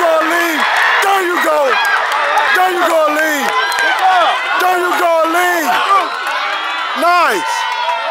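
Spectators yelling and cheering on runners in the last leg of a 4x400 m relay: a run of loud short shouts that swoop up and down in pitch, with one big whooping yell about seven seconds in.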